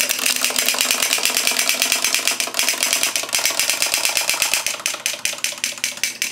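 Wind-up chattering-teeth toy clattering across a hard tabletop: a rapid, even run of clicks.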